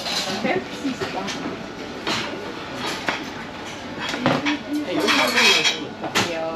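Dishes and cutlery clinking and clattering in a busy buffet restaurant, with background chatter. Several separate clinks, then a denser clatter about five seconds in that is the loudest part.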